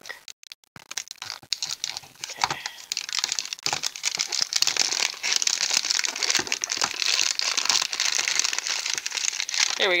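Plastic wrapping crinkling and tearing as it is pulled off a Hairdooz shampoo-bottle toy capsule. Scattered crackles at first, then steady crinkling from about three seconds in.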